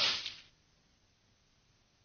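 A sharp, sudden cartoon sound effect, a whip-like crack or swish, right at the start that fades out within about half a second, then near silence.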